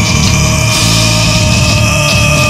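Beatdown hardcore music: heavy low riffing under a long held high note that rises slightly in pitch.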